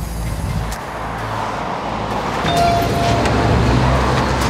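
Road traffic: the steady rumble and tyre noise of passing cars, swelling louder over the second half, with a brief high tone about two and a half seconds in.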